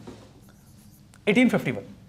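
Faint pen strokes on an interactive board screen as a digit is written, followed about a second in by a brief spoken word or two from a man's voice.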